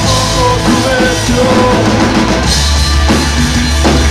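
Chilean punk rock band playing live with full drum kit, bass and guitar. The drums drive the beat, and the bass line grows stronger about halfway through.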